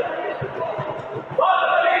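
A futsal ball being kicked and bouncing on a sports-hall court, a few dull knocks ringing in the large hall over the murmur of spectators, with a voice calling out in a drawn-out tone near the end.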